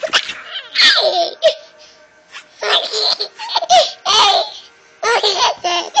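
Baby laughing in about five bursts of giggles at having his back scratched.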